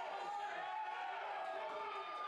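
Wrestling crowd shouting and calling out, many voices overlapping steadily with no single clear speaker.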